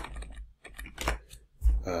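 Computer keyboard typing: a few separate keystrokes with short gaps between them.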